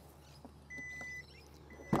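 Power tailgate warning beeps as it begins to open: one high, steady tone about half a second long, then a second one starting near the end.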